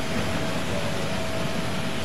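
Steady background hum and hiss with a faint high steady tone held through most of the pause, the kind of constant noise of a machine running.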